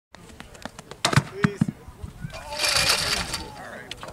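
Outdoor pole vault attempt with voices around it: a few sharp knocks, then a loud rushing burst of noise about two and a half seconds in as the vaulter drops onto the foam landing pit.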